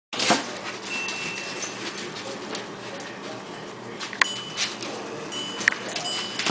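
A small dog whining in short high-pitched whines, with a few sharp clicks of claws on a wire dog crate as a Cairn terrier paws at it, standing up on her hind legs.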